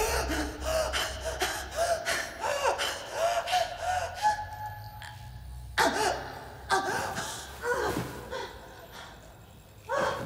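A woman gasping and breathing in short, strained, broken breaths, with a run of faint clicks in the first half. There are sharper gasps about six seconds in, twice more soon after, and again at the very end.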